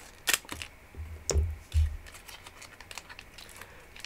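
Scissors snipping open a plastic trading card pack wrapper: a couple of sharp clicks with light crinkling, and low thumps from handling about a second and a half in.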